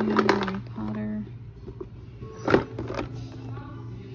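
Indistinct voice sounds, with tones held in the first second or so, over quiet background music and a low hum, with a single sharp knock a little past halfway.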